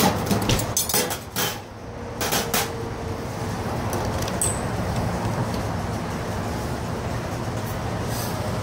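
Stainless-steel chafing dish lids clinking and clanking as they are handled and lifted, with several metal knocks in the first few seconds and a brief ring. A steady low hum of background noise runs underneath.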